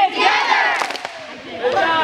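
A group of children shouting a team break cheer together, many high voices overlapping. The cheer is loudest in the first second, then gives way to excited chatter.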